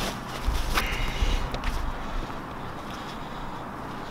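Rustling and scuffing of a nylon parachute container as hands work the closing pin through the closing loop, with a few sharp scrapes in the first two seconds, then quieter.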